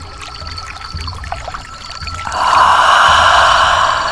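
Night-time horror ambience sound effects: water trickling, with short high chirps repeating in small groups over a slow low pulse. About two seconds in, a loud breathy whoosh swells and holds for about a second and a half, then fades.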